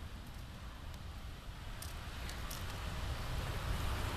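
Quiet outdoor background: a steady low rumble with a few faint light ticks about two seconds in.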